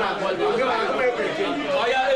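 Many people talking at once: overlapping chatter from a crowded room.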